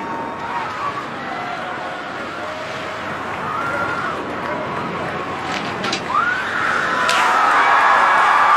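Crowd of onlookers outdoors, a general hubbub of many voices calling out, swelling about six seconds in into loud cheering and shouting as the falling jumper reaches the net.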